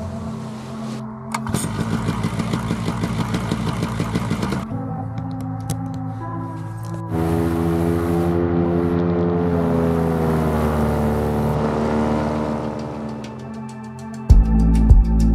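Paramotor engine running under background music; about seven seconds in it goes to full power for the takeoff run, louder, its note rising and then holding.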